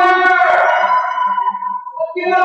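Music with singing: one long held sung note over accompaniment, fading near the end.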